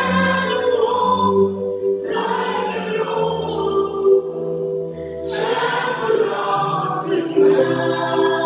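A worship team singing a slow song in several voices, with keyboard and acoustic guitar, in long held phrases; a new phrase begins about two seconds in and again about five seconds in.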